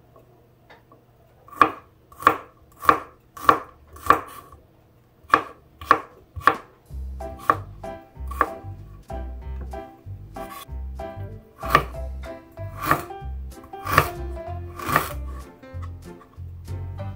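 Kitchen knife slicing garlic and ginger on a bamboo cutting board: a sharp knock of the blade on the wood with each stroke, about one or two a second. About halfway through, background music with a steady bass beat comes in under the knocks.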